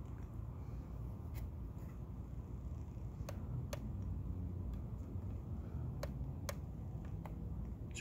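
Light clicks, about seven of them at uneven gaps and several in pairs, from a telescope being adjusted by hand, over a low steady rumble.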